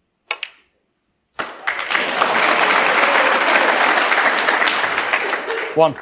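A brief sharp click about a third of a second in, as the snooker shot is struck. About a second later the audience starts applauding the potted red and keeps going until the referee's call.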